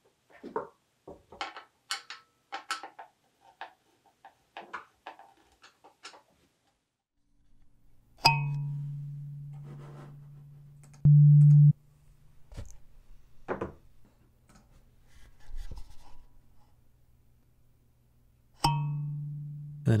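Coconut-shell kalimba being retuned and test-plucked. The first several seconds hold small clicks and scrapes as the metal tines are adjusted. About eight seconds in, a tine is plucked and rings down slowly. At about eleven seconds a brief, loud, steady reference tone from the sampler's oscillator plays, and near the end another tine is plucked and rings.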